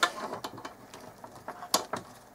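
A small metal satellite line preamp and its coax lead being handled: light rustling with a few small clicks of connectors and cable, the sharpest click near the end.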